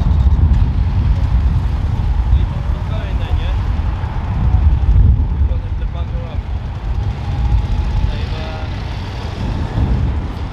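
Police motorcycle engines running as the bikes move off, over steady street traffic: a continuous low rumble, with faint snatches of voices in the middle.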